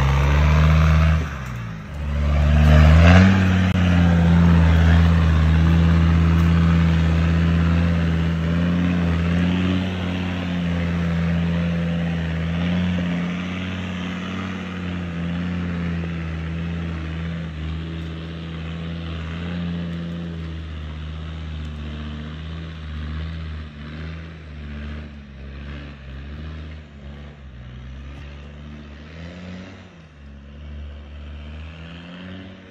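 Land Rover diesel 4x4 engine working hard under load on a steep off-road hill climb. It dips briefly about a second and a half in, revs back up about three seconds in, and runs at high revs, growing gradually fainter over the second half as the vehicle climbs away.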